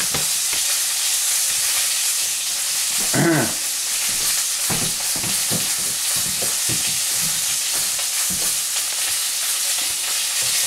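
Pork sausage frying in a pan: a steady sizzle with scattered pops from about halfway through. A short pitched sound comes about three seconds in.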